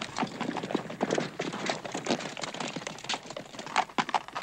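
Hoofbeats of several ridden horses running over dry ground: a quick, irregular run of hoof strikes.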